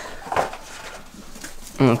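Hen's eggs being picked out of a straw-filled nest box by hand, with a brief rustle of straw and shell about a third of a second in, and low calls from hens in the coop.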